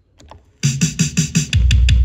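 A reggae track with a drum machine plays from a vinyl LP. After a couple of faint clicks, the music starts about half a second in with quick, even drum hits, and a deep bass note joins near the middle.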